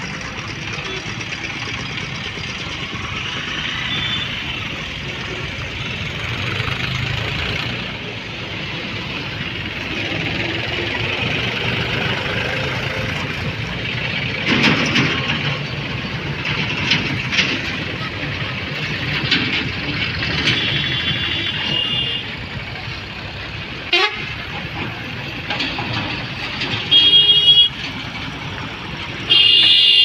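Steady motor-traffic din with vehicle horns honking several times, the longest and loudest honks in the last ten seconds.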